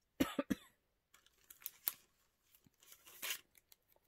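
A short cough, two or three quick bursts, just after the start, followed by faint clicks and a brief rustle of craft pieces being handled.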